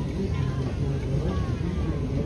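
Open-sided passenger coaches of a steam train rolling past on the track, a steady low rumble with faint voices from the riders.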